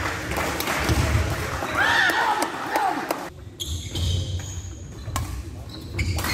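Badminton rally on a wooden court: rackets striking the shuttlecock with sharp pops, a few shoe squeaks on the floor about two seconds in, and footfall thuds.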